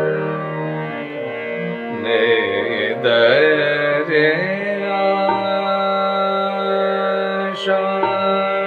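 Male Hindustani classical voice singing a Raag Bihag khayal phrase with wavering, ornamented held notes over a steady drone. The voice is strongest from about two to four and a half seconds in, and a single sharp stroke sounds near the end.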